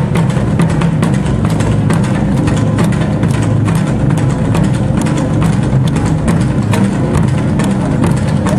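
Korean percussion ensemble of barrel drums (buk) beaten with sticks in a fast, dense, unbroken rhythm, loud, the deep drum tones ringing together under a constant stream of stick strikes.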